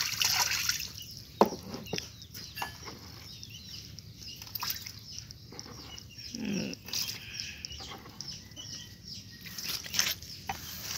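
Water poured from a plastic bowl into a plastic tub packed with young swamp eels, then sloshing and splashing as water is scooped out with the bowl, during a water change. A sharp knock about a second and a half in is the loudest sound.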